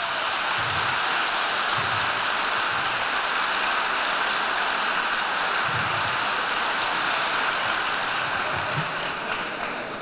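Audience applauding steadily, easing off a little near the end.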